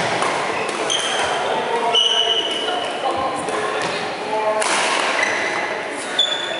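Badminton shoes squeaking on a sprung wooden court floor during a doubles rally, a few short high squeaks with a longer one about two seconds in. Racket strikes on the shuttlecock and voices sound through a large, echoing hall.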